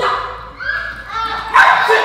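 A dog barking in short calls, with people's voices over it; the loudest burst comes near the end.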